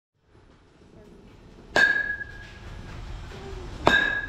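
A youth baseball bat hitting a pitched ball twice, about two seconds apart; each hit is a sharp ping that rings on briefly, the sound of a metal bat.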